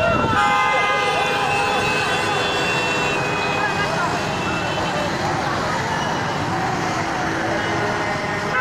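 Several vehicle horns sounding in long held blasts, strongest in the first half, over many overlapping people's voices and traffic noise.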